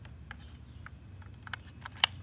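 Faint, scattered light clicks and rattles of a metal saw blade being fitted into the blade clamp of a cordless reciprocating saw, with one sharper click near the end.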